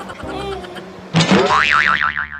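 Cartoon-style comedy sound effect: a tone that wobbles rapidly up and down in pitch, coming in suddenly about a second in after a faint voice.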